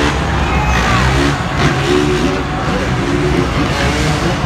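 Dirt bike engines revving as riders jump a stadium ramp course, their pitch rising and falling, mixed with the stadium's loudspeaker sound.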